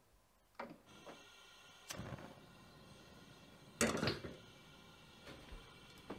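A match is struck and a gas stove burner lights, followed by a faint steady hiss of the gas flame. About four seconds in, a stainless steel pot knocks down onto the burner grate, the loudest sound here.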